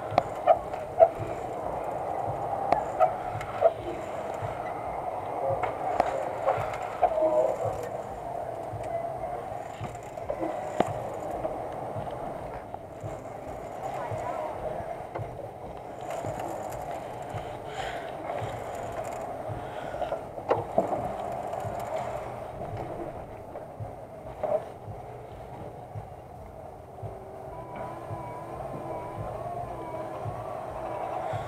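Spider spinning amusement ride running, with a steady mechanical drone and irregular clanks and knocks from the rider's car and its lap bars as it swings. A faint wavering tone comes in near the end.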